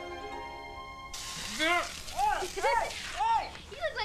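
Background music cuts off about a second in. An aerosol can of silly string then sprays with a hiss, over a run of short rising-and-falling vocal cries about twice a second as the sleeper is woken.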